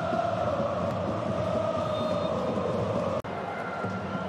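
Football stadium crowd: a steady din of many voices with supporters chanting. The sound cuts out for an instant a little after three seconds in, then carries on slightly quieter.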